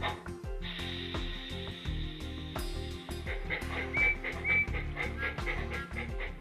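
Background music, over which the Bachmann large-scale Thomas locomotive's sound module plays a steady steam blowdown hiss for about two and a half seconds, then two short high whistle toots about four seconds in.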